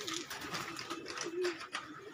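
Domestic pigeons cooing: a few low, warbling coos one after another, with faint scattered taps among them.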